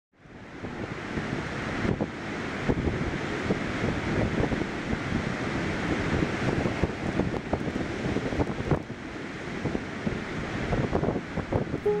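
Gusty wind buffeting the microphone: a loud, uneven rushing noise that rises and falls with the gusts, fading in over the first half second.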